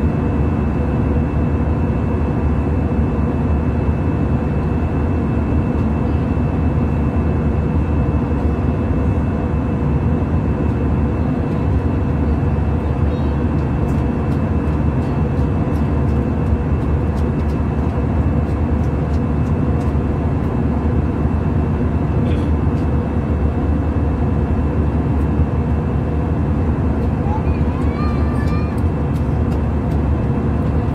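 Steady drone of an airliner in cruise heard from inside the passenger cabin: engine and airflow noise, even and unbroken, with a deep low end and a few faint steady tones.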